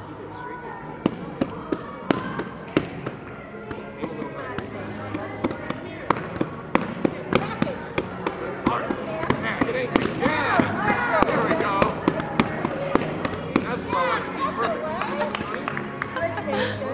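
Hand strikes smacking a padded kick shield, sharp hits in an irregular series, at times several a second. Children's voices chatter in the background.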